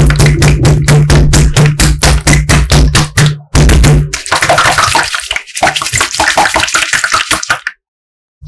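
Hands patting and pressing a large sheet of glittery slime: sticky, wet squishing pops in quick even strokes, about five a second, over a deep hum for the first four seconds. After that the squishing turns into a denser crackling and stops just before the end.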